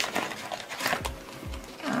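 Rustling and crinkling of a clear plastic zipper pouch and paper bills being handled in a cash binder, with short clicks and a few soft taps.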